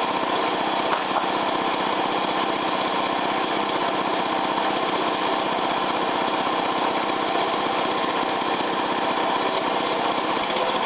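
The small gasoline engine of a Harbor Freight portable bandsaw sawmill running steadily, with one brief click about a second in.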